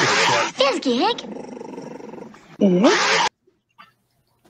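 A stream-alert sound clip with a dog-like animal sound, played for a 'puppy treat' channel-point redemption. It has loud noisy bursts and pitched cries that dip and rise, and it cuts off abruptly a little past three seconds.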